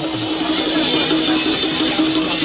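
Music with guitar playing at a steady, fairly loud level, with no speech over it.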